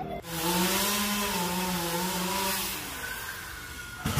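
Chainsaw running under load with a steady, slightly wavering engine note, cutting through a palm trunk; it eases off about three seconds in.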